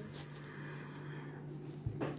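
Faint rustle of fabric as an embroidery hoop is pulled out of its elasticated cloth cover, with a light knock near the end.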